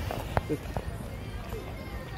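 Footsteps on stone paving, a few steps a second, over the steady hum of a city square.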